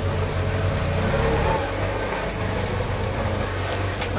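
A steady low engine rumble, running evenly with no clear starts or stops.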